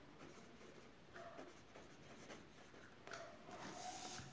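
Faint scratching of a pen writing by hand on a workbook page, in short irregular strokes.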